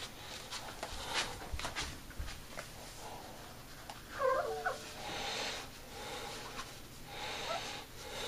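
Paper towel rustling and wiping over a glass carboy, mopping up spilled wine. There are light knocks of handling in the first couple of seconds and a short vocal sound about four seconds in.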